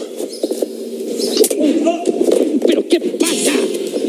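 Muffled, low voices and the commotion of a scuffle between two men, with a few sharp knocks about one and a half and three and a half seconds in.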